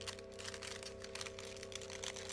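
Faint small clicks and crinkles of a little plastic bag of tiny rhinestones being handled and picked through by hand, over a steady background hum of held tones.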